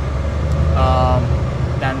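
Low drone of a semi-truck's diesel engine and road noise inside the moving cab, swelling through the first second and a half. A brief hummed tone sounds about a second in.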